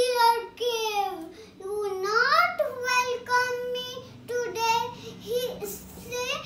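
A young girl singing in a high, sing-song voice, in short phrases with held notes and sliding pitch.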